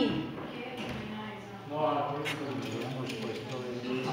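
Indistinct voices talking quietly, with a single short click a little past two seconds in.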